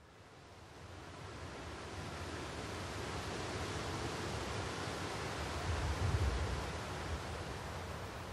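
Wind blowing through tall grass and buffeting the microphone with a low rumble. It fades in over the first couple of seconds and swells in a stronger gust about six seconds in.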